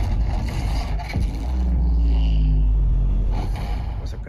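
Anime action-scene sound effects and score played back loud through a home theater's speakers and subwoofer: a heavy, deep bass rumble that swells about a second and a half in and holds, with lower tones sliding slowly downward over it.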